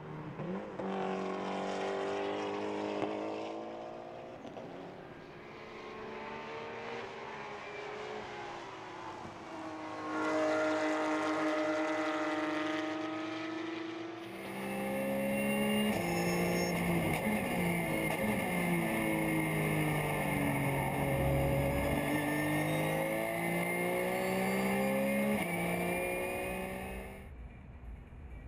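Race car engines at high revs, their pitch climbing and dropping through gear changes as cars pass: first a turbocharged Mitsubishi Lancer Evolution, then Porsche 911 race cars, louder from about the middle on.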